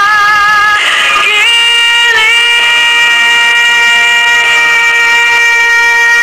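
Female pop vocalist singing live with accompaniment. After a short wavering phrase, she belts a long high note and holds it steady from about a second and a half in.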